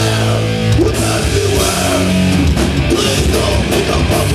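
Crossover thrash band playing live: loud distorted electric guitar and bass over a drum kit, heard through the club PA from the crowd. Held chords open the passage, with a rising slide about a second in, then fast rhythmic riffing.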